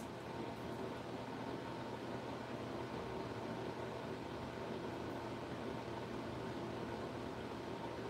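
Quiet, steady background hiss with a faint hum: room tone with no distinct events.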